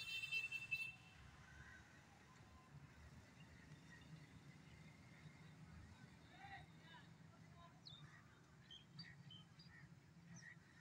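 Near silence: faint outdoor ambience with a low steady hum and scattered faint voices. A brief high-pitched tone opens it, lasting under a second.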